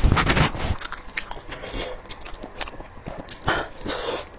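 Close-miked eating of braised spicy lamb shank: biting and chewing the meat off the bone, in irregular clicks and bites. The loudest cluster is in the first second, with another strong bite about three and a half seconds in.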